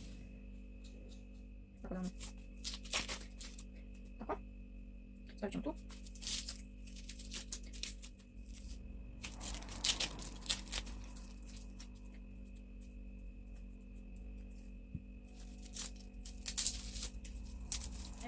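Dry onion skins crackling and tearing as an onion is peeled with a small knife: scattered short crackles and rustles in irregular clusters.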